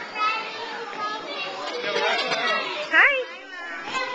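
Children playing and chattering, with a child's loud squeal rising sharply in pitch about three seconds in.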